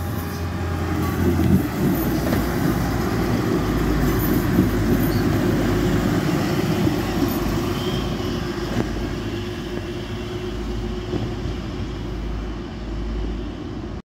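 A Renfe class 594 diesel multiple unit passing on the track and pulling away, its engine and wheels rumbling steadily and gradually fading as it moves off.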